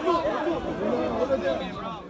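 Several people talking over one another in loud, overlapping chatter, typical of spectators at a football match, fading down near the end.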